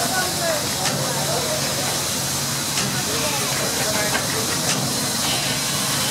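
Steady hiss of steam escaping around the cylinder and pipework of an old stationary steam engine and its boiler.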